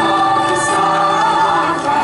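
Mixed children's and youth choir singing unaccompanied in several parts, with girls' high voices over the boys' lower voices, in long held notes.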